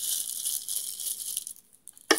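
Crinkling and rattling of a plastic cookie package as the cookies are handled, dying away about three-quarters of the way through.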